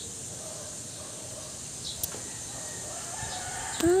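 A rooster crowing faintly, a long call about half a second in and another shortly before the end.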